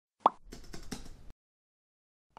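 Intro sound effect: a single short pop as the logo animation's box appears, followed by a brief run of soft clicks that stop after about a second.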